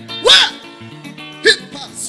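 Live gospel music with held keyboard chords, broken by two short, loud vocal exclamations from the singer: one just after the start and another about a second and a half in.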